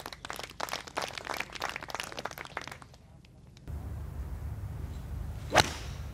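Spectators applauding a holed birdie putt for about three seconds. Then a single sharp crack of a golf club striking the ball on a tee shot, about a second before the end, over steady outdoor background.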